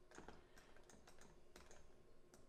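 Near silence: room tone with faint, scattered clicks from computer input while painting in Photoshop.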